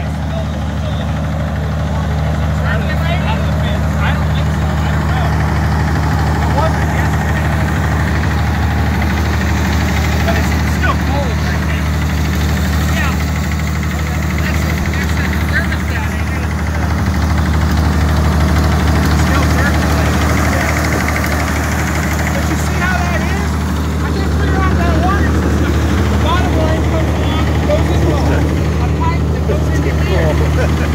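1930s White Superpower truck tractor's engine idling steadily, freshly started for the first time in 30 years.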